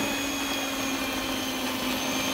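Electric hand mixer running steadily, its beaters whisking flour into a whipped egg-and-sugar batter, a constant motor hum.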